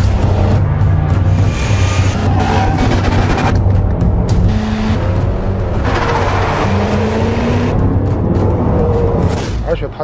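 Background music with a steady bass line, over the sound of a Range Rover Sport Plug-in Hybrid driving past, its engine and tyre noise swelling twice.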